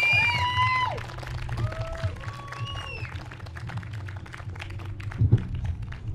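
Audience applauding, with several whistles in the first second and a couple more a few seconds in; the clapping thins out toward the end.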